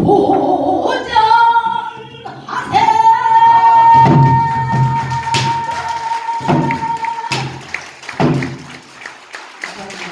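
Pansori singing: a woman's voice sliding through the melody and then holding one long high note for about four seconds, accompanied by strokes on a buk barrel drum. The drum strikes fall roughly once a second during and after the held note.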